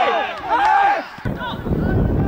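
Men shouting on the pitch, with loud calls in the first second. After an abrupt cut about a second in, wind buffets the microphone under faint distant voices.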